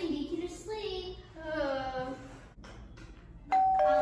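Two-tone doorbell chime, a higher note followed by a lower one (ding-dong), starting suddenly near the end and ringing on steadily.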